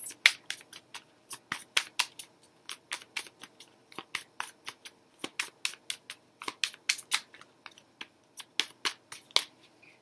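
A deck of oracle cards being shuffled by hand, the cards snapping and slapping together in quick, irregular clicks several times a second.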